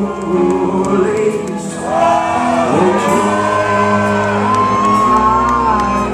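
Live rock band playing: electric guitars, bass and drums with a lead singer, recorded from the audience.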